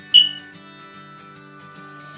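Background music with a soft acoustic guitar, broken just after the start by a single short, bright ping that rings off within a fraction of a second.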